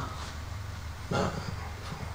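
A man's brief voiced exhale, a short sigh-like sound, about a second in, over a steady low room hum.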